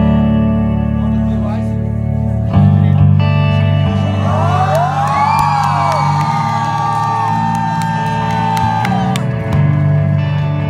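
Live rock music: a Telecaster-style electric guitar played over sustained low bass notes. From about four seconds in to near the end, high gliding, wavering notes ride over it.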